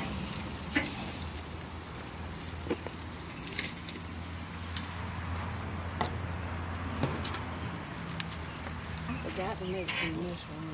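Meat sizzling on a hot outdoor grill over a low steady hum, broken by a few sharp clicks.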